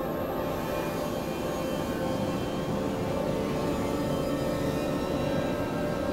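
Experimental electronic drone music: dense layers of sustained synthesizer tones and noise, steady in level, strongest in the low-middle range.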